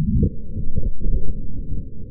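A grenade hit by an AR-15 round detonating: a sudden burst of deep, muffled booms with the high end missing, loudest about a second in, settling into a lower rumble near the end.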